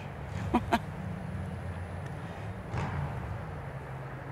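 A man's short laugh, a couple of quick breathy bursts, followed by a steady low background rumble.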